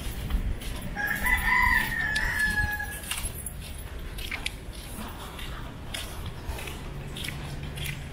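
A rooster crowing once, a single call of about two seconds starting about a second in, over footsteps on a wet street and low wind rumble on the microphone.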